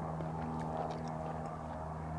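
Steady engine drone holding one pitch, with a few faint clicks over it.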